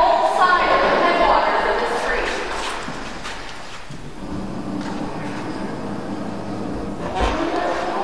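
Indistinct voices talking in a large hall, with a single low thump about seven seconds in.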